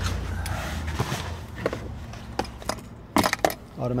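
Rustling and handling noise of a person climbing into a car's driver's seat, with a few sharp clicks and a short burst of clattering clicks about three seconds in.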